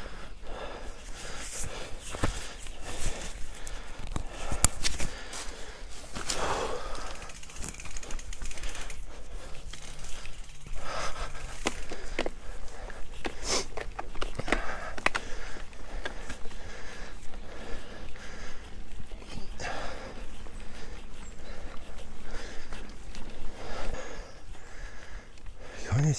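Mountain bike ridden over a dirt forest trail: tyre noise with frequent clicks and knocks from the bike rattling over bumps, and the rider breathing hard every few seconds.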